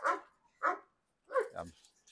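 A dog gives a single short bark about half a second in, from a kennel run of several dogs behind metal bars.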